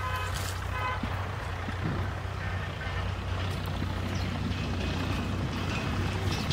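A steady low engine hum that runs without a break, under a light haze of outdoor noise.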